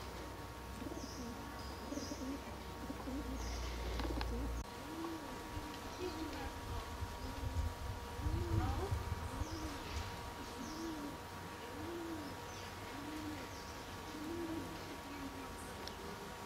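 A dove cooing: a long, regular run of low, even coos, a little under one a second, starting about five seconds in. Small birds chirp faintly now and then, over a low rumble in the first few seconds.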